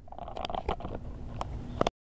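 Outdoor background noise with a few short knocks and rustles from the camera being handled, the sharpest knock just before the end.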